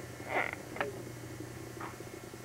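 Quiet room with a steady low hum, a brief soft breathy sound about half a second in and a faint click just after.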